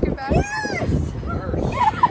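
High-pitched excited squeals from a person: one long squeal rising and falling about half a second in, and a shorter one near the end.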